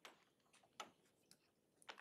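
Near silence with a few faint, irregular ticks: a stylus tapping on a tablet screen while handwriting.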